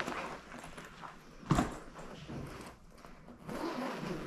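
Rustling of a winter puffer jacket and a bag being handled as the jacket is taken off, with one sharp bump about a second and a half in.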